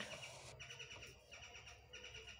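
Faint bird chirping: short high chirps repeated in small groups over quiet room tone.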